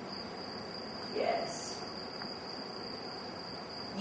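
A pause in the dialogue: faint room hiss with a steady high-pitched whine, and one faint, short vocal sound about a second in.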